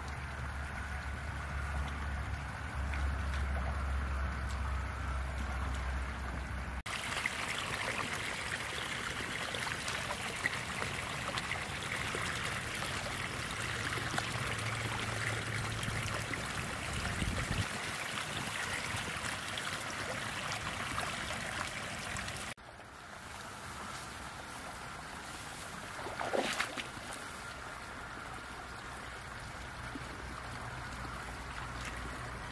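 Shallow stream water sloshing and trickling as hands grope through the streambed for river mussels, with one sharper splash a few seconds before the end.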